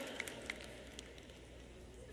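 Faint room tone with a steady low hum. The last spoken word fades out at the start, and a few faint ticks follow.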